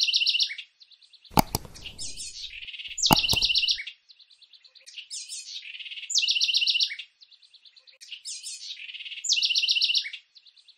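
A songbird singing the same short phrase about every three seconds: a quick run of falling notes followed by a fast, high trill. Two sharp clicks cut in, about one and a half and three seconds in, the second the loudest sound here.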